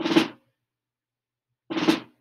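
Snare drum played with sticks: two drags, about a second and a half apart, each a short buzzy cluster of grace notes into a main stroke with a brief ring.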